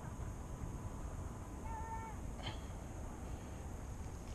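Quiet open-water ambience with a low steady rumble, and one short bird call about two seconds in, followed by a faint click.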